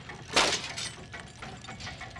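Cartoon sound effect of small parts and gears tipped out of a bag and clattering onto a wooden floor: one loud crash about half a second in, then a few lighter clicks.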